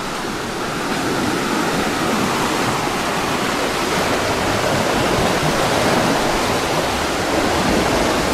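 Water rushing through a stone-walled diversion canal, a steady loud rush that grows louder over the first couple of seconds and then holds.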